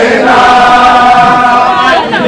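A crowd of young men singing a chant together in unison, loud, holding one long note that bends away near the end.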